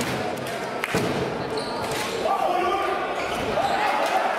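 Live sound of an indoor volleyball match in a large hall: a few sharp slaps of the ball being served and played, over continuous crowd noise with voices that swell to a held, chant-like sound about halfway through.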